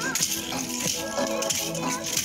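Dance music playing, with sharp rattling strikes from tasselled dance sticks shaken and tapped in time, a little under twice a second.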